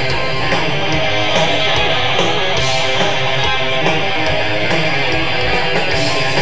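A death metal band playing live, with heavily distorted electric guitars, bass guitar and drums in a dense, fast passage.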